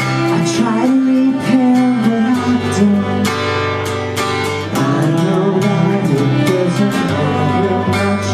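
An acoustic band playing live: strummed acoustic guitars with a bowed cello line held underneath.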